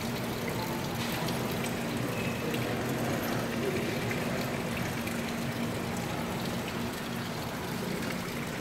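Water from a stone wall fountain trickling and splashing steadily into its basin, with a faint steady hum underneath.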